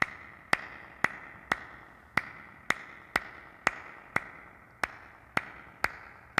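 Cupped-hand claps keeping a steady beat, about two a second, each with a hollow ring: the percussion pulse of a live loop.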